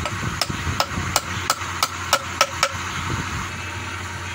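A small hammer tapping the top of a small turned wooden post, about eight quick strikes at roughly three a second, each with a short ring.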